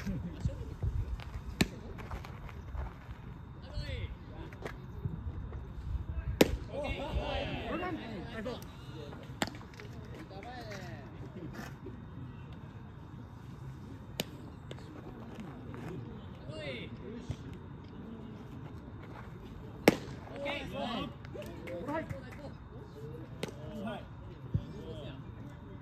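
Sharp cracks of a baseball in play on a field, the loudest two about six seconds in and near twenty seconds. Between them come players' voices calling out across the field, with low wind rumble on the microphone in the first half.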